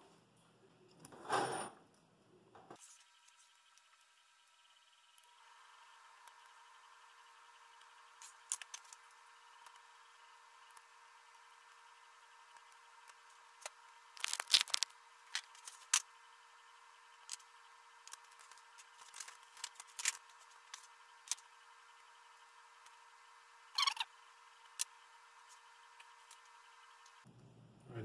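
Scattered light metallic clicks and scrapes of a hand tool tightening the gantry rail bolts on an Ender 3 V2 printer frame, with a quick cluster around the middle and another near the end. A faint steady hum of several high tones runs underneath from a few seconds in.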